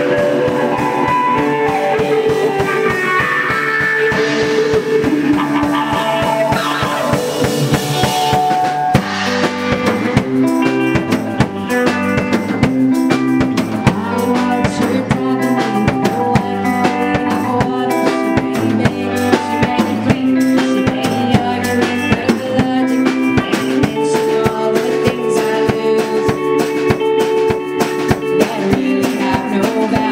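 Live rock band playing an instrumental passage: electric guitar and bass guitar notes over a drum kit, the drums settling into a busier steady beat about nine seconds in.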